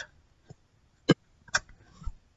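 Two short, sharp clicks about half a second apart in the second half, against a quiet background.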